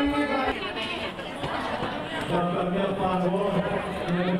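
Several people chattering at once in a crowd, with one voice standing out more clearly in the second half.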